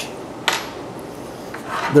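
Small metal wood screws handled on a wooden workbench, one clinking sharply once about half a second in as a brass screw is set upright in a hole in a wooden block.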